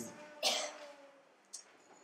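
A man's short cough into a handheld microphone about half a second in, followed by a faint tick near the end.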